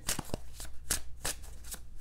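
A deck of tarot cards being shuffled by hand: an uneven run of soft card clicks and slaps, about five a second.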